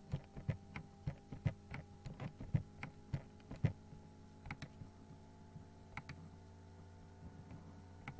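A computer mouse clicking rapidly, about three clicks a second for the first four seconds, then a few scattered clicks, over a steady low hum.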